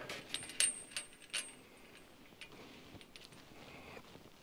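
Metal gate chain and fittings clinking and jingling in a few sharp rattles over the first second and a half, then a few faint ticks.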